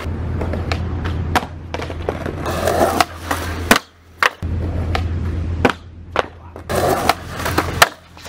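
Skateboard wheels rolling on smooth concrete in three runs, each broken off by sharp clacks of the board popping and hitting the ground. These are missed heelflip late shuvit attempts: the board flips away from the skater's feet and clatters down on its own.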